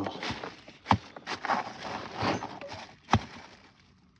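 A plastic carrier bag rustling in short bursts as a hand rummages through it, with two sharp clicks, about one second in and about three seconds in, from the metal coins and toy cars inside knocking together.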